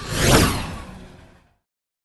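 A whoosh transition sound effect that swells to a peak about a third of a second in and fades away by about a second and a half.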